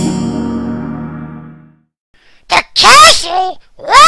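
A dramatic edited-in musical sting, a single sustained chord hit that fades out over about two seconds. After a short silence come two brief, excited vocal outbursts.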